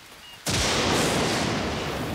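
A sudden loud thunderclap over falling rain, starting sharply about half a second in and holding steady as a loud noise for about a second and a half.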